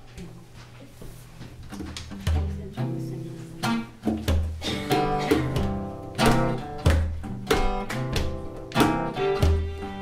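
Acoustic guitar starting a song intro: quiet plucked notes for the first couple of seconds, then a picked pattern that grows louder, with deep bass notes every couple of seconds.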